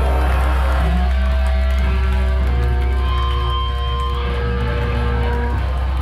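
Hardcore band playing live through a club PA: distorted electric guitars hold long ringing notes, with a few bends, over a constant heavy low end.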